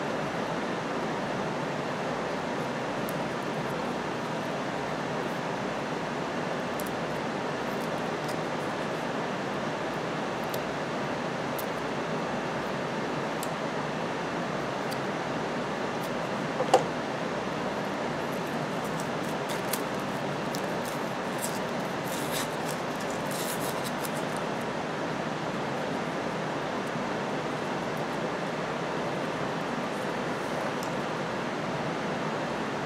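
Hands pulling apart a tape-wrapped, scroll-sawn pine blank, freeing the compound-cut figure from its waste pieces: faint scratching, a sharp click about halfway through, and light crackling of tape and wood a few seconds later. A steady rushing noise runs underneath.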